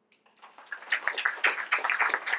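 Audience applause starting about half a second in and quickly swelling into a steady mass of many hands clapping.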